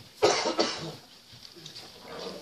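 A person coughing twice in quick succession, a sudden loud double burst about a quarter second in, then the room goes quiet.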